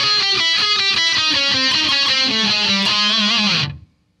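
Electric guitar playing a fast descending lead run from a solo, the notes stepping down the neck and settling on a held low note, which is cut off shortly before the end.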